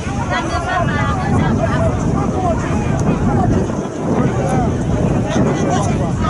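Several people's voices talking and shouting over one another, with wind rumbling on the microphone.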